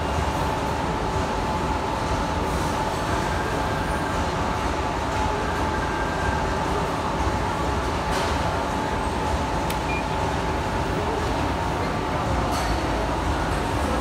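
Amada HG1003 ATC press brake running: a steady, unbroken machine hum with a constant whine, and a few faint clicks.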